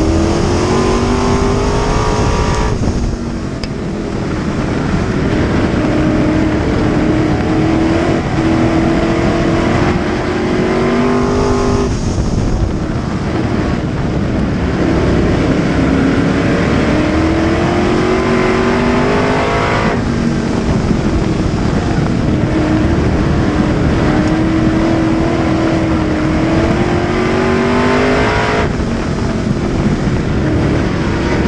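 A-Hobby dirt track race car engine heard from inside the cockpit at racing speed. Its note climbs steadily, then drops off sharply as the throttle is lifted, four times about eight seconds apart, lap after lap.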